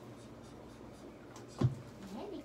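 Hands rustling and shifting fur and cloth while holding a rabbit's hind leg in place on an X-ray cassette, with one short knock about one and a half seconds in.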